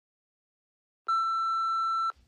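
Dead silence, then about a second in a steady electronic test tone, the bars-and-tone beep that goes with television colour bars, starts abruptly and holds at one pitch.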